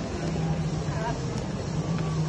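Indistinct voices over a steady low hum: the background noise of a busy indoor shopping mall, with a brief snatch of nearby speech about a second in.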